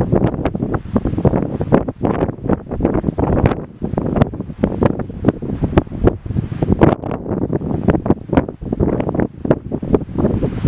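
Strong, gusty wind buffeting the microphone: a loud, uneven rumble broken by frequent sharp pops.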